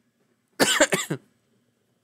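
A man coughing: a short burst of several quick coughs about half a second in, lasting under a second.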